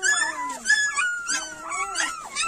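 Newborn Kangal puppies whimpering: several thin, high, wavering cries overlapping one another.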